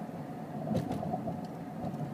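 Steady low hum of a moving vehicle with a faint steady tone in it, and a short click just under a second in.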